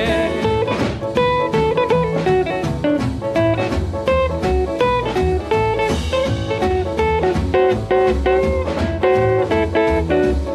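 Western swing band recording playing an instrumental break between sung verses: a quick plucked-string lead over a steady bass and rhythm section.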